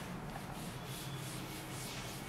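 A cloth duster wiping chalk off a chalkboard: a quick series of rubbing strokes, about four a second.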